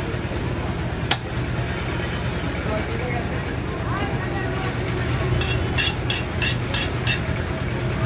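Butcher's knife striking goat meat and bone on a wooden chopping block: one sharp knock about a second in, then a run of six quick strikes at about four a second. Under it is a steady murmur of market voices and traffic.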